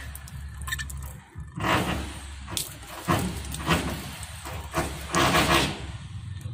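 Water draining out of the open end of a grey plastic pipe and splashing on a metal roof, over a low steady rumble, with the splashing swelling louder in a few bursts. The line is being emptied to replace a faulty one-way check valve on a solar water heater.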